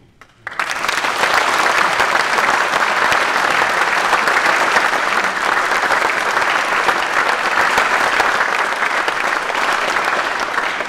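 Audience applauding, a dense clatter of many hands that breaks out about half a second in and keeps up steadily and loudly.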